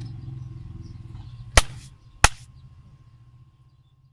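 Two sharp clicks about two-thirds of a second apart over a low steady hum, which fades out near the end.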